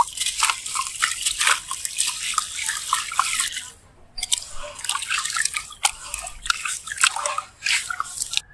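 A wet sand-and-cement chunk being crumbled and squeezed by hand in a tub of water: a rapid run of gritty crunches mixed with dripping and splashing. There is a brief lull about four seconds in.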